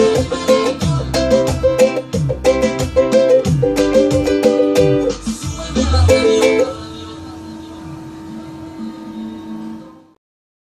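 Ukulele strummed in a quick reggaeton rhythm through the chords A minor, F, C and G, over a low, regular thumping beat. Near seven seconds in, the strumming stops and a final chord rings on quietly and fades out.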